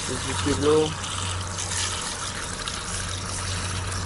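Water spraying steadily from a garden-hose nozzle into a two-stroke motorcycle cylinder block, a ported Kawasaki ZX150 block, rinsing out the metal dust left from porting.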